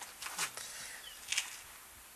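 A pause in a man's speech: two short breath sounds, about a second apart, over a quiet background.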